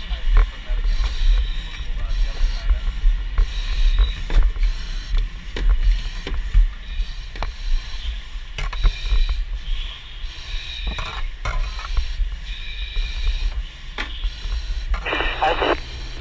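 Firefighter's breathing through an SCBA mask regulator, a hiss recurring every few seconds, over a low rumble and scattered knocks of gear and hose handling. Near the end a fire-ground radio transmission begins.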